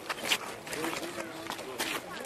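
Indistinct talk among men: several voices murmuring at close range, with no clear words.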